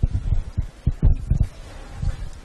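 Handling noise on a microphone: a series of about six irregular low thumps and bumps.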